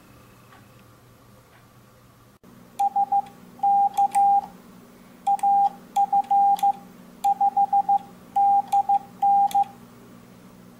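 Morse code sent by hand on an MFJ-564 iambic paddle through an MFJ-422D electronic keyer: a single steady sidetone beep keyed in dots and dashes, starting about three seconds in, with faint clicks from the paddle along with it. A steady low hum runs underneath.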